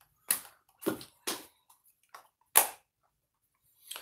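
Plastic makeup cases and compacts being handled and set down on a table: three sharp clicks and knocks in the first second and a half, and one more about two and a half seconds in.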